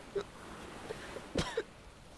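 A person coughing briefly: a few short, sudden coughs, the loudest about one and a half seconds in.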